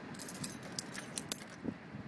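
A bunch of keys jangling at a door lock, in a quick series of light metallic clicks.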